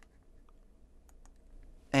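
Several faint, short clicks from a laptop being operated, over low room hum.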